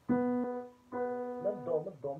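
Digital piano: one note struck and held about half a second, then the same note struck again about a second in and held. A man's voice starts over the second note near the end.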